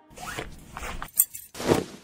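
Quiet a cappella vocal percussion: a few short, scratchy breath-and-mouth strokes, with a sharp click a little over a second in and a swell just before the end.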